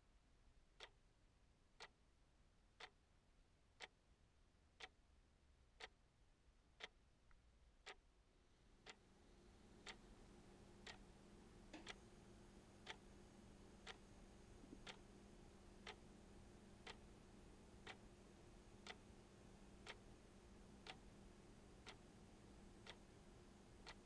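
A clock ticking softly and evenly, about one tick a second. About nine seconds in, a faint steady hum of room tone comes in under the ticks.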